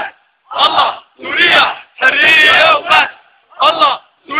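Crowd of protesters chanting slogans in unison: loud shouted phrases of about half a second to a second each, with short pauses between them.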